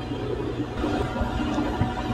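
Steady low background rumble of room noise with a faint steady hum, and no distinct event.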